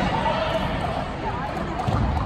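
Indistinct chatter of many voices in an echoing sports hall, with a steady low rumble underneath.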